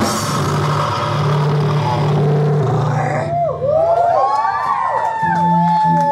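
Live black metal band closing a song: a cymbal crash and held distorted chord ring out, then about three seconds in the band sound thins to electric guitar feedback, with notes swooping up and down and one long steady feedback tone.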